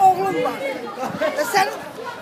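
A woman speaking in an agitated voice, with other people's voices around her.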